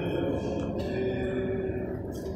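Church hymn music in a reverberant nave, with long held notes.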